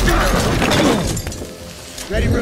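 Film sound mix of a shattering, breaking crash over dramatic score. It is loud for about the first second and then dies down.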